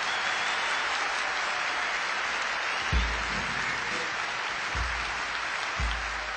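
Audience applause after the song ends, with a few low thumps about three, five and six seconds in.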